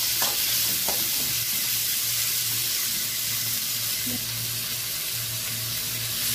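Chopped shallots, tomatoes, garlic and dried red chillies sizzling in hot oil in a metal kadai while a metal spatula stirs them: a steady frying hiss with a few light knocks of the spatula against the pan.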